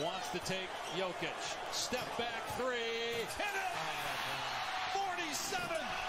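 Basketball being dribbled on a hardwood court, with a TV commentator's voice and steady arena crowd noise from the game broadcast.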